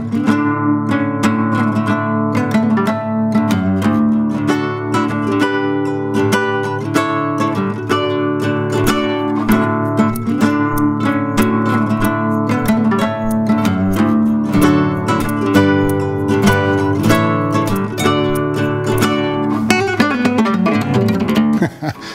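Classical guitar played fingerstyle: a busy run of plucked notes over a bass line, with a melody and high flourishes layered on top as several parts played together. The playing stops just before the end.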